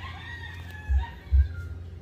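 A faint rooster crowing, one long call falling slightly in pitch over about a second and a half. Two short low thumps of wind on the microphone are the loudest sounds.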